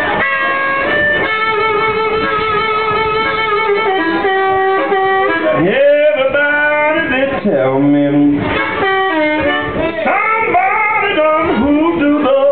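Live blues band playing, with an amplified harmonica played into a vocal microphone. It plays long held notes for the first few seconds, followed by bending, sliding notes over the band.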